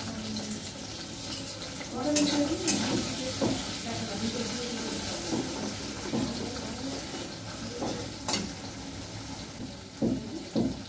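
Food sizzling as it fries in a pan on a gas stove while it is stirred, with a few light clinks of the utensil against the pan.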